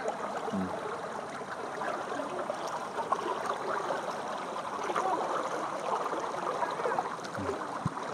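Shallow floodwater running, with steady splashing from legs wading through it.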